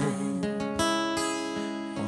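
Acoustic guitar strummed, with fresh chord strokes about half a second in and again just before a second, the chord then ringing on and slowly fading.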